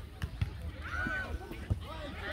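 Two dull thumps of a soccer ball being kicked on grass, about half a second in and near the end, under faint distant voices of players and spectators.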